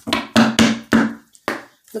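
An oracle card deck being cut and knocked against a tabletop: about five sharp, quick slaps in under two seconds.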